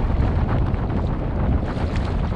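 Strong wind buffeting the microphone, with choppy water slapping and splashing against a kayak's hull as it heads into the wind.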